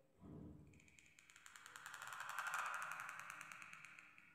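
A calligraphy qalam's nib scratching across paper during a slow ink stroke. It is a faint, dry rasp that swells over a couple of seconds and fades again.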